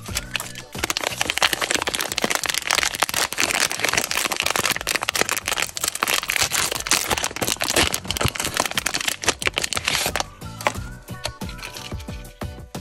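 Plastic snack wrapper crinkling and tearing as it is opened by hand, a dense crackle that thins out about ten seconds in. Background music plays underneath.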